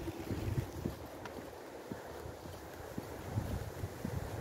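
Wind buffeting the microphone: an uneven low rumble that swells and drops in gusts.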